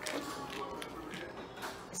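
Light taps and handling noise from a can of peanuts being turned over in the hands, a few faint clicks, over faint steady tones.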